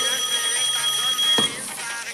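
Telephone ringing with a steady high electronic tone that cuts off about one and a half seconds in as the corded handset is picked up.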